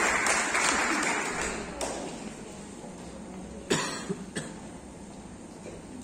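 Audience applause and clapping fading out over the first two seconds. Then a quieter room with one short, sharp cough-like noise about midway and two fainter clicks just after.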